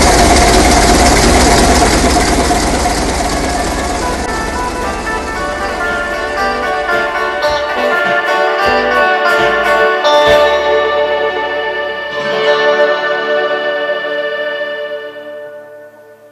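A ship's diesel engine running loudly, fading out over the first six or so seconds while music rises in its place. The music carries on and fades out near the end.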